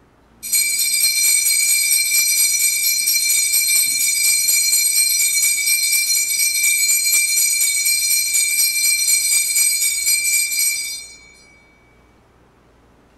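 Altar bells rung at the elevation of the consecrated host: a bright, high ringing, shaken rapidly and without pause for about ten seconds, which then dies away.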